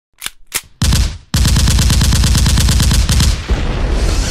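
Gunfire: two single shots, a short burst, then a long run of rapid automatic fire lasting about two seconds, which stops abruptly and leaves a fading echo.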